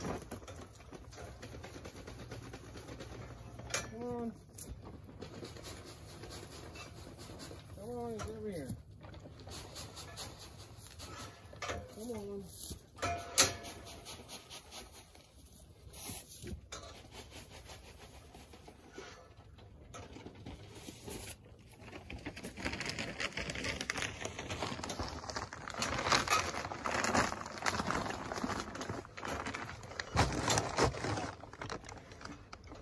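Beef cattle mooing at a feed bunk: three or four calls a few seconds apart, each rising and falling in pitch. In the last several seconds a louder, rough noise builds up.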